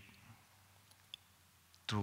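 A pause in a man's speech into a microphone: quiet room tone with one faint, short click about a second in. His speech starts again right at the end.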